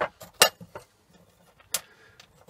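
A handful of light, sharp knocks and clinks as a short steel tube and small drilled blocks are handled and set against each other on a hard floor: about four, the loudest near the start and about half a second in, another near the end.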